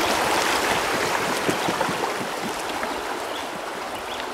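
Shallow river water rushing and rippling over a stony bed around a poled bamboo raft, a steady rush that eases slightly toward the end.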